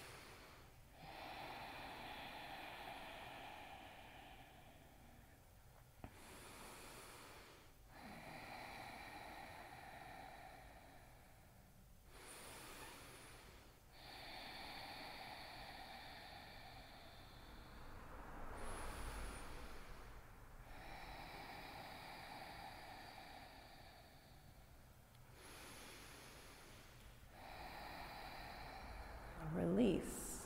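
Slow, faint ujjayi breathing: long, audible inhales and exhales through the nose with a constricted throat, each lasting a few seconds, about five full breaths.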